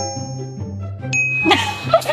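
Editing sound effect of bright chime dings: a quick rising run of notes rings on as a held bell-like tone, and a second, higher ding sounds about a second in. A steady low music bed runs underneath.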